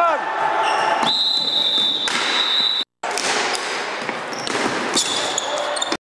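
Live game sound of indoor ball hockey on a wooden gym floor: sneakers squeaking, with high drawn-out squeals, knocks of sticks and ball, and indistinct players' voices, all echoing in the hall. The sound cuts out for a split second just before three seconds in, at an edit.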